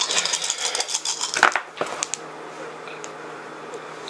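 A handful of six-sided dice rolled onto a table, clattering for about a second and a half, then a few last clicks as they settle.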